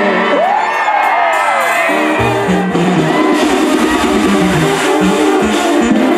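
Crowd whooping and cheering at an amplified live concert, then about two seconds in a regional Mexican band with tuba and brass starts playing, a bass line stepping under the full band.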